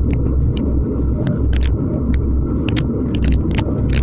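Wind rumbling on the microphone of an action camera on a road bike moving at about 50 km/h, a loud, steady low roar, with scattered sharp clicks several times a second.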